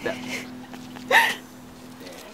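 A person's short voiced exclamation about a second in, with a fainter murmur just before it, over a faint steady low hum.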